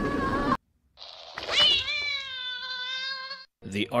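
A cat-like meow drawn out into a long yowl: the pitch sweeps up sharply, then holds steady for about two seconds. Before it, a wavering pitched sound cuts off suddenly about half a second in and is followed by a moment of silence.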